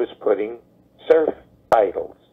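A man talking over a telephone line, with a single sharp click late on.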